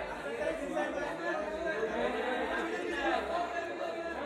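Many voices talking over one another at once: crowd chatter with no single voice standing out.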